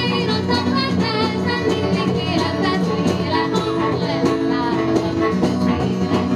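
Live folk song: a woman singing with vibrato over strummed acoustic guitar.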